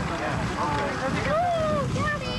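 Several people talking at once, unclear chatter among a group of field workers, with wind rumbling on the microphone.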